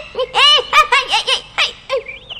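Young boys laughing in quick bursts of high-pitched giggles as they run, a voiced cartoon soundtrack.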